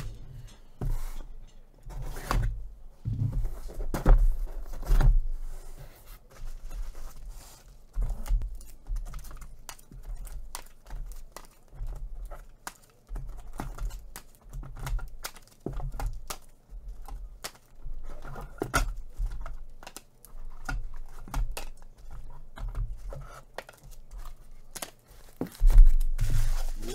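A sealed cardboard shipping case being opened and unpacked by hand: a steady run of short knocks, low thuds and crinkly rustles from the box flaps and the bubble wrap inside.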